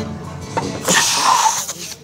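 A pause between sung lines, with faint acoustic guitar underneath. About a second in comes a short, loud, breathy noise from a person, like a sharp breath or gasp.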